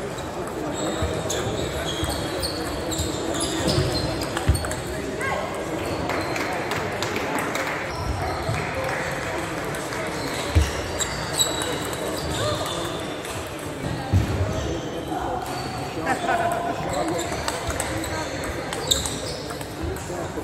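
Table tennis ball clicking off bats and the table in short, intermittent exchanges during rallies, over steady background chatter in a large sports hall.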